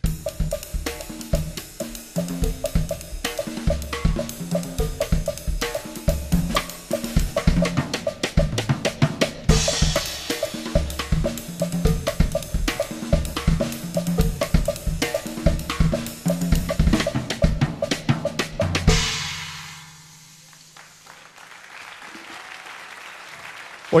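Solo drum kit played: a groove on bass drum, snare, toms and cymbals in a straight 4/4 feel, with a fill phrased in a 6/8 feel. It ends on a cymbal crash about 19 seconds in that rings out and fades away.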